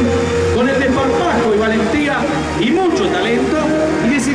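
A voice speaking over a public-address loudspeaker across an open racetrack, with a steady low hum underneath.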